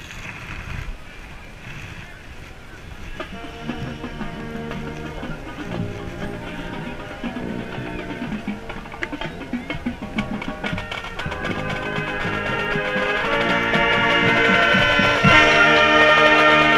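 Marching band brass and percussion starting a few seconds in with soft held chords and swelling steadily to full, loud brass by the end, heard close up from inside the band.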